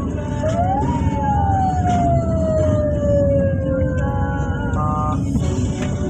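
A siren-like wail, one tone that rises briefly and then falls slowly for about four seconds, over a steady low rumble. Near the end, a short cluster of steady tones sounds together.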